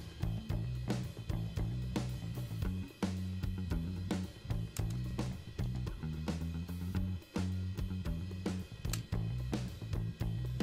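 Playback of a studio mix soloed to drums and bass: a drum kit with kick, snare, hi-hat and cymbals keeping a steady beat over a bass line.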